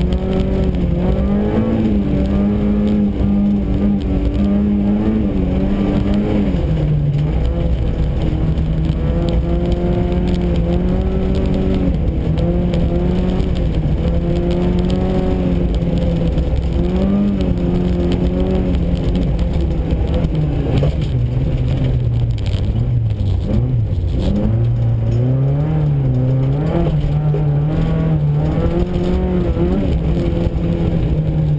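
A Volkswagen Golf GTI rally car's engine heard from inside the cabin, pulling hard. Its pitch climbs and falls continually with the throttle, with a few sharper drops, over steady tyre and road noise.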